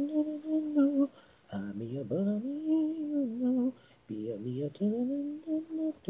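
A solo female lead vocal sung a cappella, with no instruments: three sustained, melodic phrases, with short breaks between them about a second in and near four seconds in.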